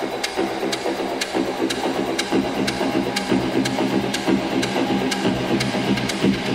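Techno from a DJ set: a steady, pulsing electronic beat with a crisp tick repeating about twice a second over a dense, humming bass and mid layer.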